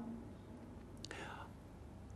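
A brief pause in a man's speech: quiet room tone with one faint breath drawn in about a second in.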